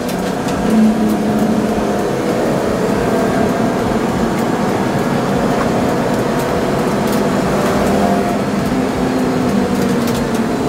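BMW E30 325i's straight-six engine heard from inside the cabin while lapping a circuit, its note rising and falling with the throttle through the corners, with a brief louder surge about a second in.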